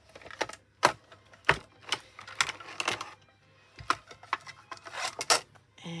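Plastic clicks and knocks as a manual die-cutting machine is set down and its folding platforms are opened out, with metal cutting plates being handled. The clatter is irregular, with a few sharper knocks among lighter clicks and rustling.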